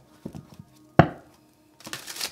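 A deck of tarot cards handled and shuffled by hand: a few light taps, one sharp knock of the deck about a second in, then the cards start rustling near the end.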